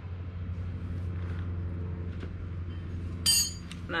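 A single bright, ringing metallic clink about three seconds in, as a ratchet wrench and socket are fitted onto the motorcycle's rear axle nut, over a steady low hum.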